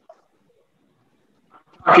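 Near silence with a faint click just after the start, then a person's voice starts speaking abruptly near the end.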